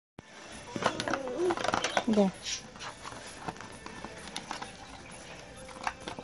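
Cardboard gift box and its packaging being handled as a doll is pulled out: scattered light clicks and rustles. Voices are heard in the first couple of seconds.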